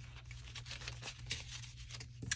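Soft rustling of paper banknotes being handled and tucked into a binder pocket, with a few faint crisp ticks.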